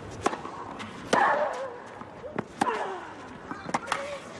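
Tennis rally on a clay court: sharp racket strikes on the ball and ball bounces, about every second, with a player's loud falling grunt on two of the hits.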